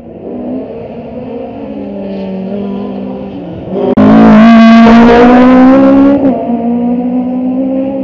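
Toyota Starlet rally car's engine held at high revs as it approaches. It passes very loud about four seconds in, then pulls away.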